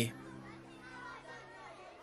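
A man's reading voice finishes a word at the very start, then a pause in which only faint background sound remains.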